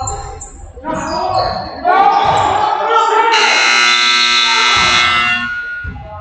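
Spectators shouting and cheering in a gym, then the scoreboard buzzer sounds one steady tone for about a second and a half, marking the end of the period.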